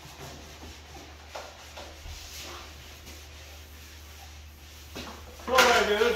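Quiet handling noises from painting tools, with faint rubbing and a few soft knocks, as paint is picked up on a sponge. A man starts talking near the end.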